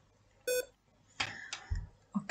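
A short electronic beep from a device as a charger is plugged in, followed by a few clicks and a low thump from handling the plug and device.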